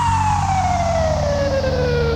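Electronic dance music: one long falling synth sweep slides steadily down in pitch over a pulsing bass line.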